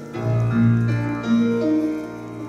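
Live ensemble playing the instrumental introduction to a slow ballad: a melody of held notes moves step by step over a deep bass note that comes in just after the start.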